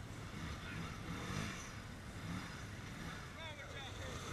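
An ATV engine running low and steady, with indistinct voices in the background.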